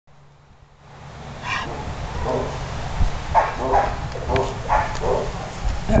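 A dog barking: a run of several short barks, over a steady low rumble.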